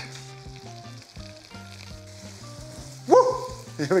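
Food sizzling in a hot pot as cognac goes in for a flambé, under soft background music. About three seconds in comes a short, loud exclamation that rises in pitch.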